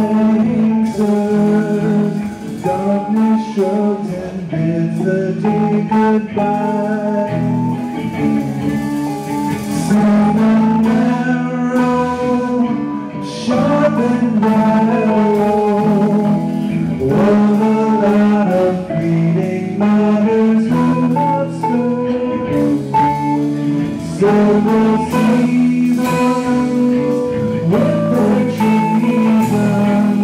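Live blues-rock band playing continuously: electric guitars, keyboards and drums.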